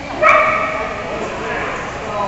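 A dog gives one loud, high yelp about a quarter of a second in, then it fades, over the background chatter of an indoor hall.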